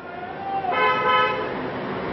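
A loud, horn-like honk lasting about half a second, starting just under a second in, over a noisy background that grows steadily louder.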